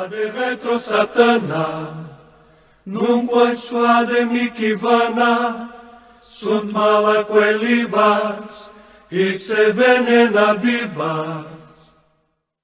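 A voice chanting a short sung prayer in four phrases, holding notes at the ends, with brief pauses between the phrases.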